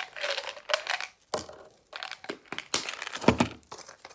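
Close handling noises: irregular rustling and crinkling with a couple of dull knocks.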